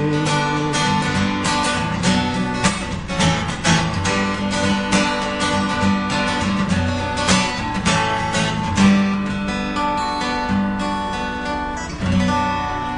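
Acoustic guitar strummed solo in an instrumental passage after the last sung line of a song, steady strums over held chords, the strokes thinning out near the end as the song winds down.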